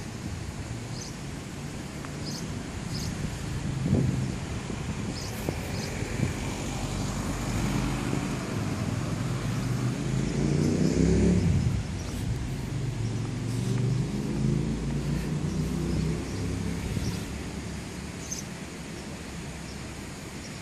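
A motor vehicle's engine going by on the street, climbing in pitch as it accelerates and loudest about eleven seconds in, then a second, weaker rise before it fades.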